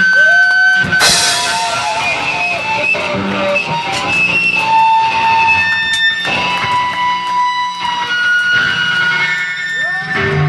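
Live rock band with electric guitars ringing in long held tones, and a sharp hit about a second in and another near six seconds.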